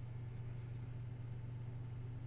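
Quiet room tone dominated by a steady low hum, with a few faint light scratches or ticks about half a second in, such as fingers handling the miniature's base.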